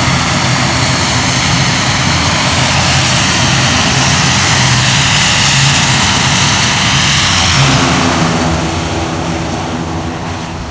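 The twin turboprop engines of an ATR airliner run as it taxis close by: a loud, steady engine noise with a low propeller drone. Near the end the pitch shifts slightly and the sound begins to fade as the aircraft moves off.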